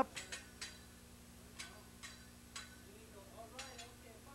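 A hibachi chef's metal spatula and fork clicking, about eight light, sharp metal clinks spaced unevenly, the chef's warming-up routine at the teppanyaki griddle.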